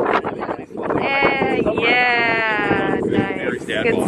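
A person's voice holding a long, wavering, bleat-like note for about two seconds, with wind rumbling on the microphone.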